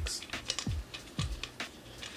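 Handling clicks from a camera shoulder rig being assembled: several short, sharp clicks and light knocks of its parts, roughly every half second.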